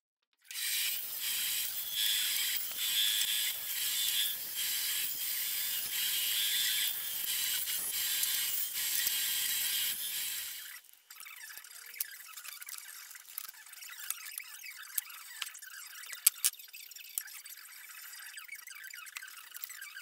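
Power saw with a narrow blade cutting white plastic channel-letter strip: a steady, high-pitched noise that stops about halfway through. After it come light clicks and taps as the plastic pieces are handled.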